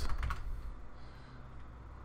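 A few computer keyboard keystrokes in the first half second, then only a faint low hum.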